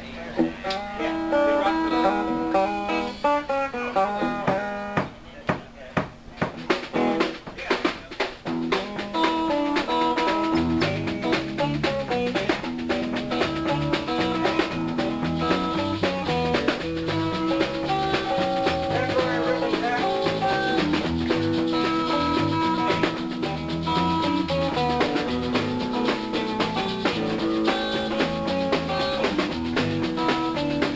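A live blues-rock band playing, with electric guitar and drum kit. The guitar plays a melodic line at the start with scattered drum hits, and about a third of the way in the full band comes in, with a steady beat and a heavy low end.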